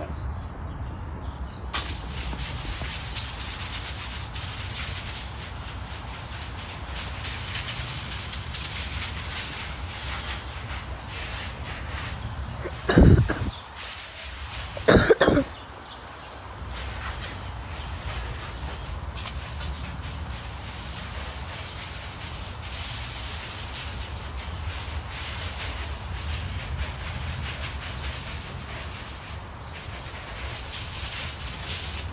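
Garden hose spray nozzle spraying water, a steady hiss that starts suddenly about two seconds in, over a low rumble. Two loud bumps break in about halfway through, a couple of seconds apart.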